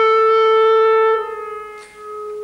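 Solo clarinet holding one long high note, loud at first, then dropping suddenly to a softer level a little past halfway and fading briefly near the end before the same note sounds again softly.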